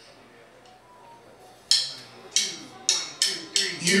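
Drumsticks clicking a count-in: six sharp clicks that come quicker and quicker, after a couple of seconds of quiet room sound, leading straight into the band's first sung note.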